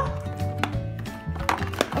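Background music with held notes and a steady low beat, with a few light clicks near the middle and toward the end.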